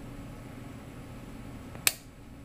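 Whirlpool washer shifter actuator's drive micromotor running with a steady hum as its plastic cam gear turns, then one sharp click near the end as the cam trips the newly fitted microswitch, switching it off.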